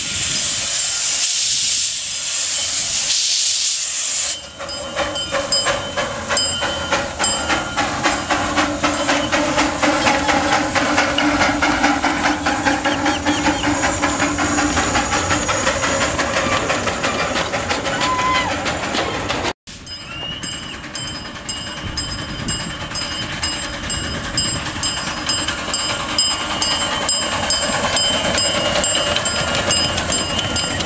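A 5/12-scale live steam locomotive: steam hisses loudly for about four seconds, then the exhaust chuffs in a quick, even beat as the engine runs, with the sound of its wheels on the rails. The sound drops out briefly about two-thirds of the way in.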